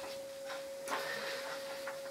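A pause in speech: faint room tone under a steady, thin electronic hum, with a soft click about a second in.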